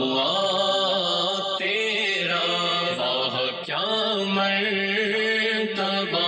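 A voice chanting a naat, a devotional poem in praise of the Prophet, in a slow, drawn-out melody that bends from note to note over a steady low drone.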